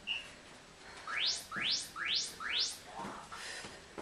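Interval-timer app signalling the start of a work round: a short beep ends a once-a-second countdown, then about a second in come four quick rising chirps. In the second half, feet thud on the floor as jumping lunges begin.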